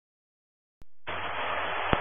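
Dead silence, then a click about a second in and steady radio static with a low hum as a transmitter keys up on the VHF air-band frequency.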